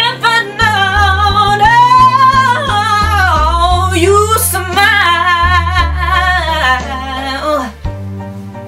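A woman singing a slow soul ballad in long, sliding sung lines over instrumental backing with held low bass notes. The voice stops shortly before the end, leaving the quieter backing.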